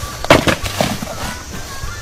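Thrown baby shoes landing among branches and brush: a sharp knock about a third of a second in, then a few fainter knocks.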